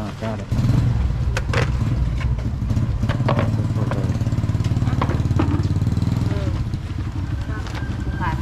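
A motorcycle engine running close by. It comes in suddenly about half a second in, holds steady, and eases off near the end.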